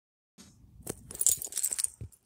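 A quick, irregular run of small clicks and clinks, starting about half a second in and busiest toward the end.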